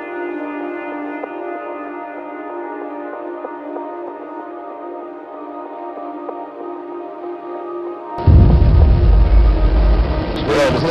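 Slow ambient music of long held tones, then about eight seconds in a sudden, loud, deep rumble cuts in: the Saturn V's five F-1 first-stage engines at liftoff.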